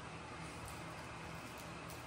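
Quiet room tone: a faint steady low hum and hiss, with no distinct sounds.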